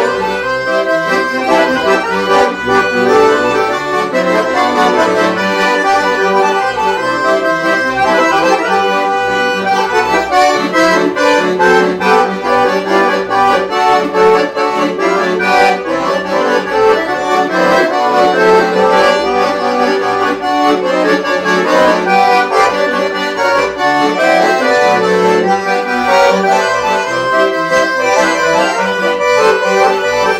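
Two piano accordions, a Todeschini Super 5 and a Titano, playing a Brazilian dance tune (toque de baile) together. One leads the melody while the other accompanies with flourishes.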